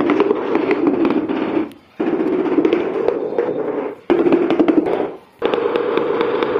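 Rapid tapping on a large ceramic floor tile with the end of a bamboo-handled hammer, a fast run of knocks that seats the tile into its bed of tile adhesive. It comes in runs of about a second or two, broken by three short pauses.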